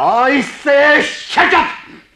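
A person shouting angrily in three loud, drawn-out cries with no clear words, the first falling in pitch: screaming in a heated domestic quarrel.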